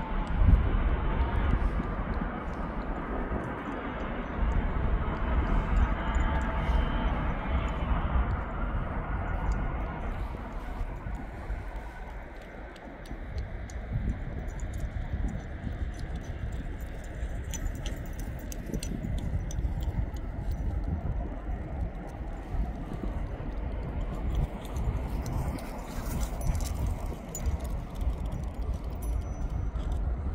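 easyJet Airbus A320-family jet airliner on its takeoff roll and climb-out. The engine noise with its low rumble is loudest for the first eight seconds or so, then fades as the aircraft climbs away. Scattered clicks run through the second half.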